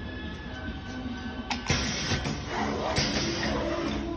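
Pneumatic flatbed screen printing machine cycling: about a second and a half in a sharp clack and a loud hiss of exhausting air from its cylinders, then a second clack and hiss about three seconds in, over background music.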